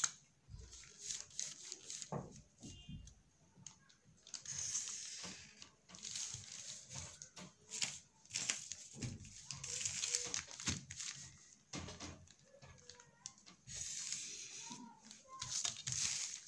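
Stiff brown pattern paper rustling and crinkling under the hands, in several spells, with scattered light clicks and taps as a clear plastic ruler is moved and laid on it.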